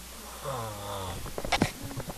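A sleeping child snoring, one drawn-out breath sliding down in pitch. Near the end come a few sharp knocks and rustles of the camera being handled.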